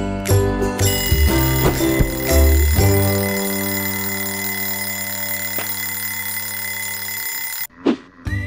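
Cartoon twin-bell alarm clock ringing continuously, with background music, then cutting off suddenly near the end.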